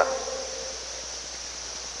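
A pause in a man's speech, holding only steady background hiss from the recording, with a faint trace of the voice dying away at the start.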